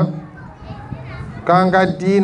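A man's voice speaking into a microphone, picked up through the amplified feed; it pauses briefly and resumes about one and a half seconds in.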